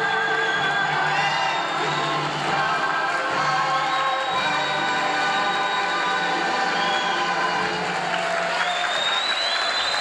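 A live vocal number with musical accompaniment, the singer holding sustained notes. Near the end the song gives way to audience applause and cheering.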